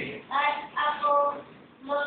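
A high voice singing short, steady held notes, with a brief break about three-quarters of the way through before it picks up again.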